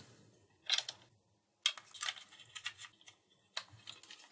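Hard plastic clicking and knocking as a small battery tester is handled and fitted into a Nerf Barricade blaster's plastic shell: a single click about a second in, then a quick irregular run of clicks and a few more near the end.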